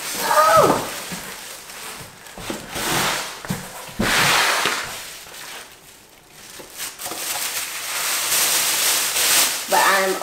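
Clear plastic bag around a newly unboxed pressure canner crinkling and rustling as it is lifted out of a cardboard box, in uneven bursts. A short vocal sound comes at the very start.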